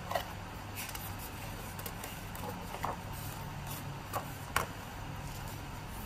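A paper picture-book page being turned by hand and pressed flat, with a few brief soft rustles and taps of hands on paper over a steady low hum.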